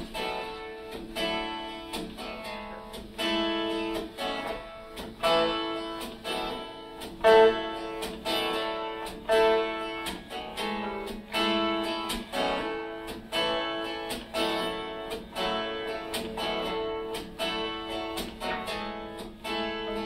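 Live acoustic folk music: strummed acoustic guitar with plucked strings playing a song's instrumental introduction in a steady rhythm, before the vocal comes in.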